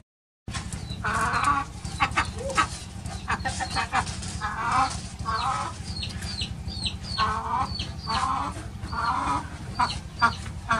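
A chicken clucking in short repeated calls, with thin high chirps joining from about the middle on.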